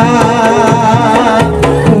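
Kuda kepang (jaranan) accompaniment music: kendang hand drums beating a steady rhythm under a sustained, wavering melody line.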